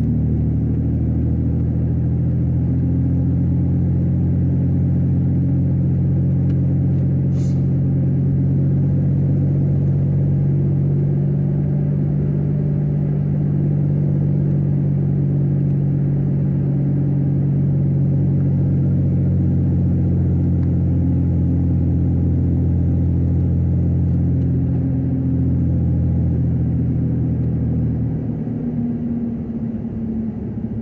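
Ford Ranger pickup driving at steady road speed, heard from inside the cab as a steady low engine and road drone. There is one brief click about seven seconds in, and the drone eases off near the end.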